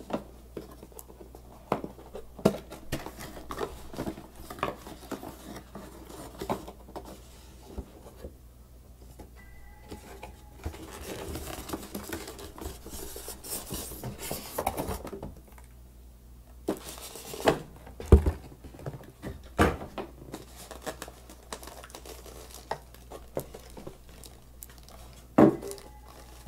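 Unboxing handling noise from a cardboard box and its foam insert: scattered light taps and knocks, a stretch of scraping rustle in the middle, and a few sharper knocks in the second half.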